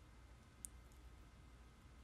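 Near silence: room tone, with one faint, brief click a little over half a second in.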